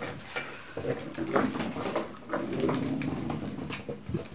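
A pet dog playing with its toy, making irregular knocks and scuffling sounds.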